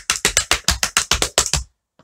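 Tap shoes' metal taps striking a wooden tap board in fast running shuffles: a quick, even stream of sharp clicks, about seven a second, that stops abruptly near the end.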